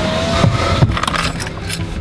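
A car's engine idling, heard from inside the cabin as a steady low hum, with a few small clicks and knocks.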